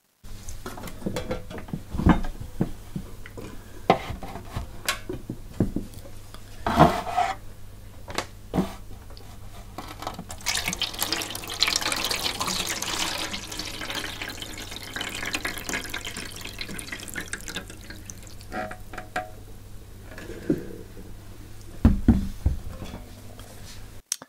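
Water being poured out of a stainless steel water bath tank for several seconds, emptying it for a dry run, with knocks and clunks from the tank being handled before and after.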